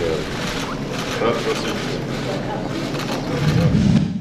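Steady background noise with faint, indistinct voices under it. A low rumble swells near the end.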